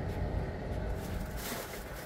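Idling vehicle engine, a steady low rumble, with a brief rustle of movement about one and a half seconds in.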